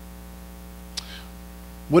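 Steady electrical mains hum in the recording, with one short faint click about a second in; a man's voice begins speaking at the very end.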